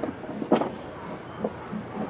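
A few light, separate clicks and taps from a small wrench working a mud-flap screw at the wheel arch, the sharpest about half a second in.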